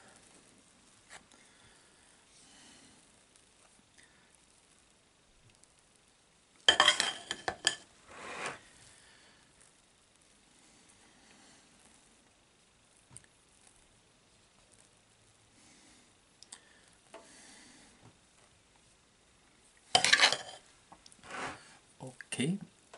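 Metal palette knife spreading whipped cream over a cake, soft and faint, with two short spells of loud metal clatter and scraping from the knife, one about seven seconds in and one near the end.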